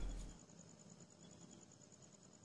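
Faint, steady chirping of crickets, a high evenly pulsing trill, typical night ambience. A louder sound fades out within the first half-second.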